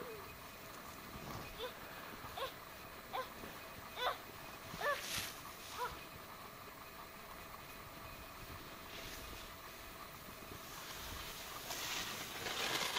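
Snowboard sliding over snow, with a hiss that builds near the end. In the first half there are about six short calls, each rising in pitch.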